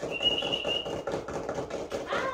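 A goldendoodle puppy's claws clicking quickly on a laminate floor as it trots. A short high squeak is heard near the start and lasts under a second.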